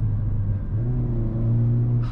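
2022 Hyundai Kona N's 2.0-litre turbocharged four-cylinder engine pulling under acceleration, heard from inside the cabin as a steady low drone that steps slightly higher and louder about two-thirds of a second in.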